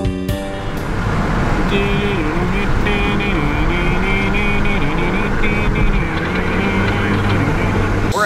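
Car driving, with steady road and engine noise heard inside the cabin. Music plays over it: a note pattern ends within the first second, then a slowly wavering melody line carries on through the rest.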